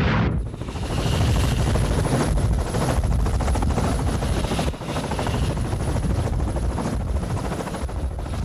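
Westland Sea King helicopter running on a carrier flight deck: its twin turbine engines whine and its rotor blades chop fast and steadily. A jet's roar is cut off abruptly a moment in.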